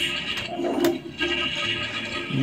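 Toilet Trouble toy toilet being flushed: two sharp clicks from the plastic flush handle over the toy's electronic, music-like sound effect.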